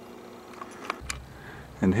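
Quiet background hum with a couple of faint clicks. About halfway in, a low steady rumble of outdoor background noise starts, and a single spoken word comes near the end.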